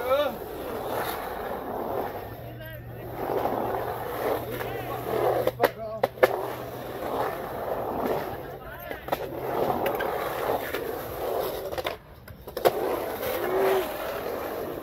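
Skateboard wheels rolling on a concrete bowl, the roar swelling and fading in waves as the skater carves up and down the transitions. There are a few sharp clacks about six seconds in and another near the end.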